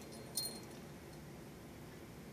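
A single faint, light metallic clink about half a second in, then quiet room tone.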